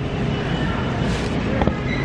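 Steady low rumble of supermarket background noise with faint distant voices. A single sharp click comes about one and a half seconds in.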